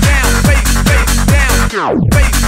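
Electronic house dance music from a DJ mix: a steady kick drum a little over two beats a second under repeated falling synth stabs. Near the end the sound sweeps down and drops out for a moment before the beat comes back.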